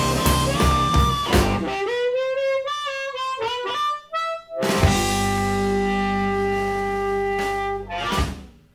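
Ending of an electric blues band number: the drum beat stops about a second and a half in, a solo blues harmonica plays a run of bent notes, then the band hits and holds a final chord that stops at the very end.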